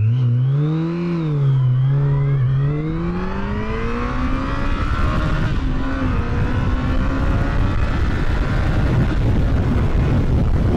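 2018 Yamaha FJR1300 ES's liquid-cooled inline-four engine in a full-throttle pull test. The revs rise and fall briefly as the bike pulls away, then climb steadily, with a short dip in pitch about six seconds in before they climb again. Wind noise builds near the end.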